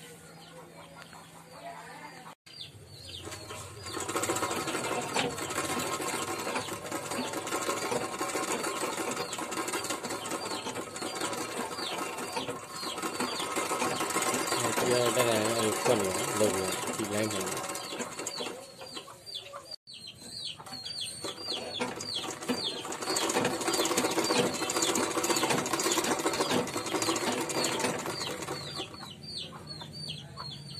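Overlock sewing machine running and stitching, a fast steady stitching rattle that starts a few seconds in. It cuts out briefly about twenty seconds in and then runs again.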